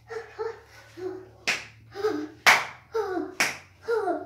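Three sharp hand claps about a second apart, the loudest in the middle, with a child's voice chanting short syllables between them.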